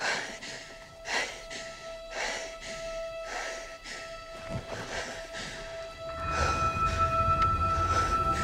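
Film trailer soundtrack: a held orchestral note with quick, hard breaths over it about twice a second. About six seconds in, a higher held note and a deep low rumble swell in and grow louder.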